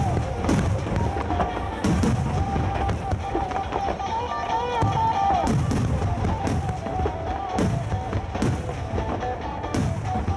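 A volley of No. 5 (15 cm) aerial firework shells bursting in quick succession. The sharp booms come about once a second, some in close pairs, over a continuous low rumble.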